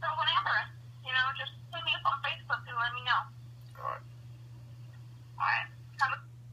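A person talking over a telephone line in short phrases with pauses, over a steady low hum.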